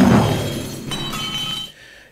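Crash sound effect: a sudden heavy impact followed by glass shattering, with ringing shards tinkling for about a second before it cuts off abruptly, standing in for a car hitting a cyclist.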